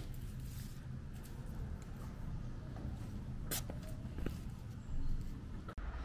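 A few brief brush strokes of a broom sweeping leaves on pavement, over a steady low rumble.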